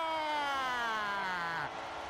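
Hockey play-by-play announcer's drawn-out shouted goal call, 'SCORE!', held as one long note that slides slowly down in pitch and ends about three-quarters of the way through.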